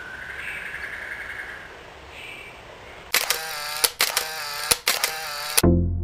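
Faint outdoor background, then about three seconds in a loud warbling buzz broken by a few sharp clicks, which stops abruptly as electronic synthesizer music begins near the end.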